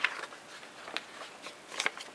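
Paper and card being handled and lined up on a table: soft rustling with a few light taps, one about a second in and two close together near the end.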